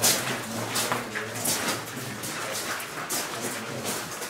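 Footsteps of people walking on a rough mine floor, a step about every three-quarters of a second.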